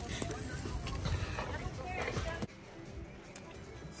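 Meat sizzling in a wire grill basket over an open fire, with scattered crackles. It cuts off suddenly about two and a half seconds in, leaving a quieter stretch with faint music.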